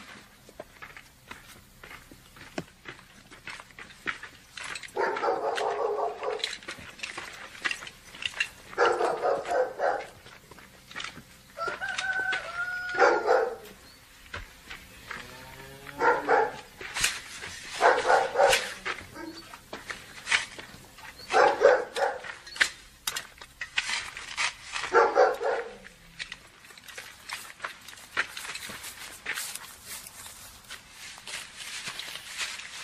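Animal calls, about seven of them spread out, each about a second long, with short clicks and knocks between.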